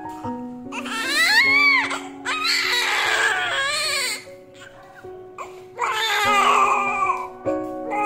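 Newborn baby crying in several bouts, each cry rising then falling in pitch, with a quieter gap of about a second and a half midway. Background music with sustained notes plays underneath.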